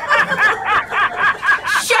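A person laughing in a quick, even run of 'ha-ha' pulses, about five a second.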